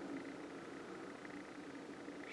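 Faint background ambience: a low, steady hum with light hiss.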